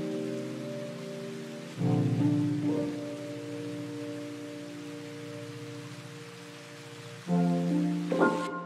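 Steady rain, an even hiss, under soft sustained music chords. The chords swell in about two seconds in, fade slowly, and come in again near the end.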